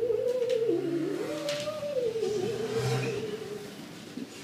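A man humming a slow, wandering tune that rises and falls, fading out shortly before the end.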